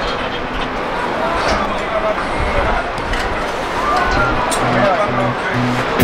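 Voices calling out over a steady rushing noise, with background music with a steady beat coming in about four and a half seconds in.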